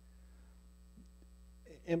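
Steady low electrical mains hum in a pause between speech. A man's voice comes in near the end.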